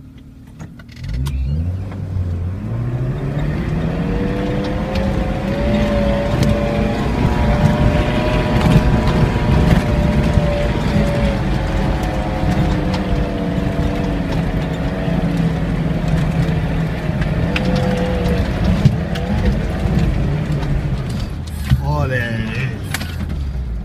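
Off-road 4x4's engine revving up from idle about a second in, then pulling hard and steady under load while climbing a steep dirt slope, its pitch swelling and dipping a little as the climb goes on.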